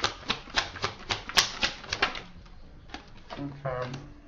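Tarot cards being shuffled by hand: a run of quick card snaps, about four a second, that stops about two seconds in, followed by a few scattered taps.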